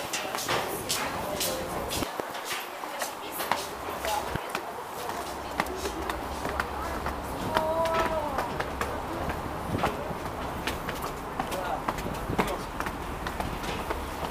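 Footsteps of several people walking on a stone floor and up stairs, with scattered faint voices of passers-by. A low steady rumble of street noise comes in about four seconds in.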